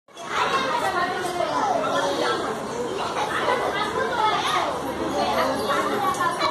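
Several people talking over one another in continuous chatter.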